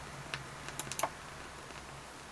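Surface noise from a 7-inch vinyl single playing on a turntable past the end of the song: a low steady hum and a handful of sharp, irregular clicks and pops in the first second.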